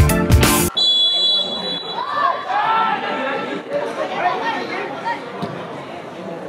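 Background music cuts off abruptly under a second in, giving way to open-air ambience of voices chattering and calling out across a football pitch.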